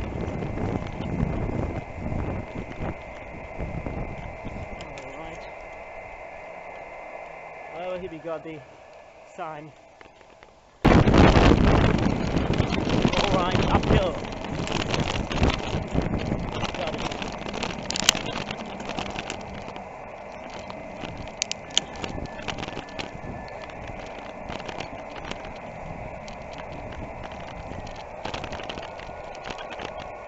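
Bicycle riding with wind and road noise on the microphone, over the radio's speaker playing faint shortwave band audio with indistinct voices and steady tones. About eleven seconds in the wind and road rumble jumps suddenly much louder and stays rough.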